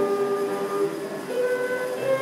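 Transverse flute played in long sustained notes: a low note held for about a second, then a step up to a higher held note.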